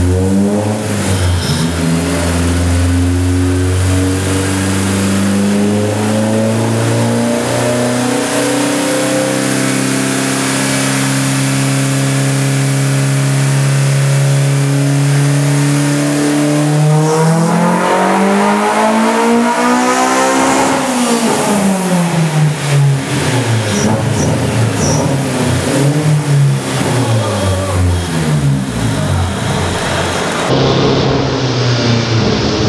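Honda S2000's four-cylinder engine running on the rollers of a chassis dyno during a tuning run. Its revs climb slowly and steadily for most of the first half, then sweep up quickly to a peak and wind back down.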